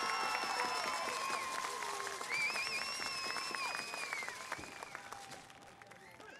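Stadium crowd applauding with high-pitched cheering over the clapping, dying away over the last second or two.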